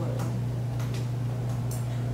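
A steady low hum in the meeting room's recording, with a few faint ticks and clicks scattered through it.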